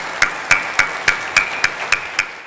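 Audience applauding at the end of a talk, a steady wash of clapping with sharp single claps standing out evenly, about three or four a second.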